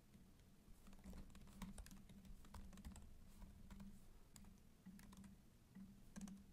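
Faint typing on a computer keyboard: quick, irregular keystrokes as a line of code is entered.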